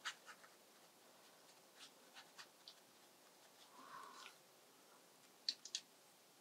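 Very faint scratchy strokes of a watercolour brush on paper, with scattered soft ticks, then three quick sharp clicks near the end.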